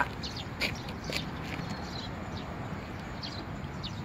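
Steady outdoor background noise with a few faint, short, high chirps or ticks scattered through it.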